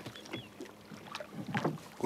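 Faint water and handling sounds of a fishing net being hauled by hand into a boat, with a few small clicks.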